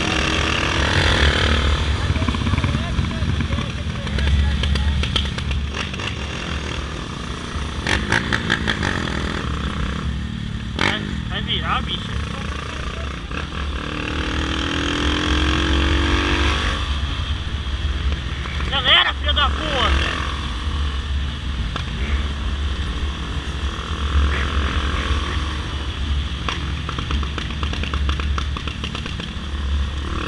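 Honda motorcycle running as it rides along a street at around 40 to 50 km/h, with heavy wind rumble on the bike-mounted microphone.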